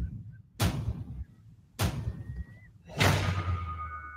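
Movie-trailer sound design: heavy boom hits, one about every second and a bit, each dying away slowly, with a low drone swelling in after the third hit.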